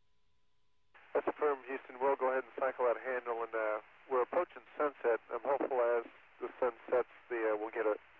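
A voice talking over a narrow-band radio link, starting about a second in; before it, a faint steady tone.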